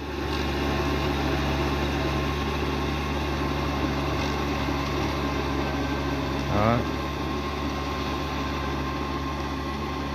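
Yanmar 494 tractor's diesel engine running steadily under load as it works a flooded rice paddy on steel cage wheels, a low even drone.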